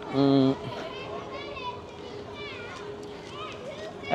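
Distant children's voices calling and playing, faint and high-pitched, over outdoor background noise. A brief, loud man's voice sounds just at the start.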